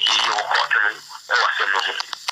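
Speech only: a man talking, in a language the recogniser did not transcribe, with a short pause about a second in.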